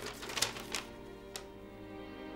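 A sheet of lined paper rustling and crackling as a letter is handled and unfolded: a cluster of quick crinkles in the first second and one more shortly after. Soft background music plays underneath.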